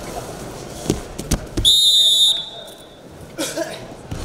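Two dull thuds of wrestlers' bodies hitting the mat, then a single short, shrill referee's whistle blast about a second and a half in, stopping the action after the throw.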